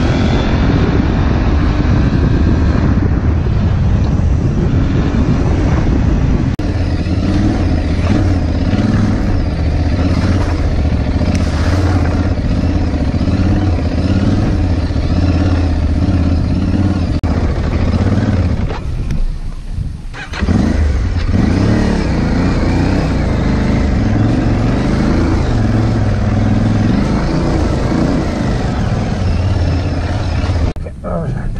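Aprilia Tuareg 660's parallel-twin engine running under throttle while the bike is ridden off-road, heard from the rider's helmet. The sound drops away briefly about two-thirds of the way in, then picks up again.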